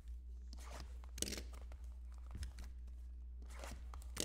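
Faint plastic and cardboard rustles and a few light clicks as hands handle a shrink-wrapped trading-card hobby box, over a steady low hum.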